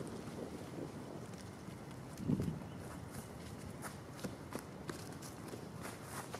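Footsteps crunching and rustling through dry fallen leaves, with scattered short crackles and one louder dull sound a little over two seconds in.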